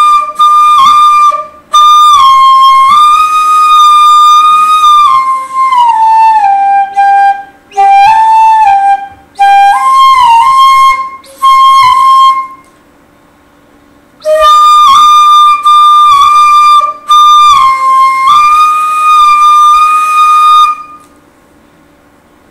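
Bansuri (bamboo flute) playing a slow, single-line melody in raga Shivaranjani, phrase by phrase with short breaths between. The line steps down in pitch in the middle and climbs back, stops for about two seconds, then a second phrase is played and ends about a second before the end.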